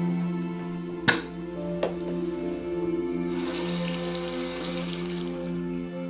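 Water running from a bathroom sink tap for about two seconds in the second half, with a sharp click about a second in, all over steady background music.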